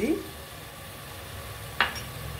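Tomato-and-onion masala in oil cooking in an aluminium pot over a gas flame, giving a low, steady sizzle. Near the end comes a single sharp tap.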